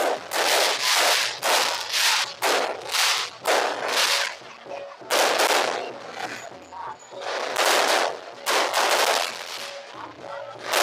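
Aerial fireworks going off overhead in quick succession: a dozen or so loud bangs, unevenly spaced, with a short lull about two-thirds of the way through.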